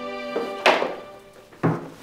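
Two sudden thumps about a second apart, from a man dropping down onto a bed and pulling the bedclothes, over sustained background music.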